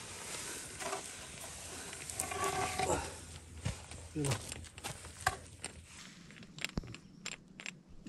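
Quiet voices talking on and off, then several sharp clicks and knocks in the second half, from work at the wheel of an SUV stuck in mud, where a wooden plank is being worked in beside the tyre and a bottle jack is set under it.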